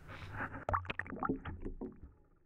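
Water splashing and sloshing in plastic buckets as fish are handled and sorted by hand: a quick series of short splashes and knocks over a low background hum.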